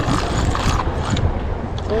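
Steady wind rumble buffeting the microphone.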